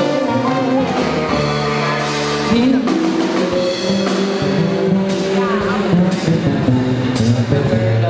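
A woman singing a show tune with a live band of keyboard, saxophone, upright bass and drum kit, the drums keeping a steady beat under sustained notes and a moving bass line.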